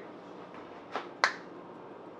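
Two short, sharp clicks about a quarter second apart, the second the louder, over quiet room tone.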